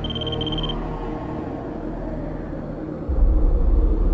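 Cinematic trailer sound design: a few short high electronic beeps at the start over a dark, slowly falling drone, then a deep low rumble swelling in about three seconds in.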